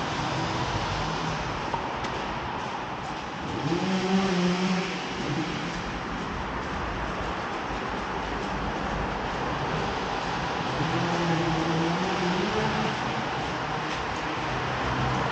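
Steady road-traffic noise heard inside a concrete pedestrian underpass, with two motor vehicles going by, one about four seconds in and one about eleven seconds in, their engine pitch rising and falling as they pass.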